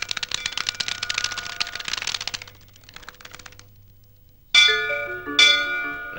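A flock of birds taking off, a dense clatter of wingbeats for about two and a half seconds that fades out. About four and a half seconds in come two loud musical stings about a second apart, each a quick run of falling notes.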